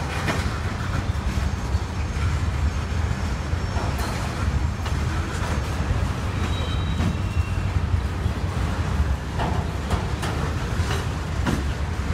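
Freight train cars rolling past on the rails: a steady low rumble of wheels, with scattered clacks over the rail joints.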